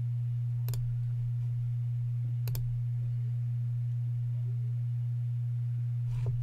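A steady low-pitched electrical hum, with two short clicks, one under a second in and one about two and a half seconds in.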